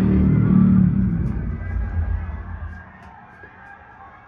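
Film soundtrack played through a Wharfedale Evo home-theatre speaker system and subwoofer: a deep rumble with a held low tone that fades away over about three seconds, leaving the room much quieter.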